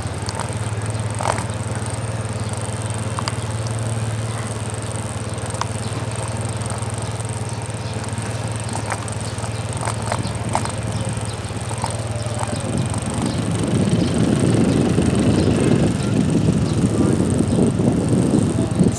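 Motorcycle engine running steadily on the move, a low even hum. Wind buffeting on the microphone grows louder about two-thirds of the way in.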